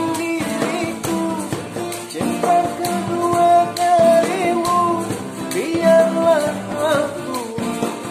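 A man singing a dangdut song in long, wavering held notes over instrumental accompaniment with drums.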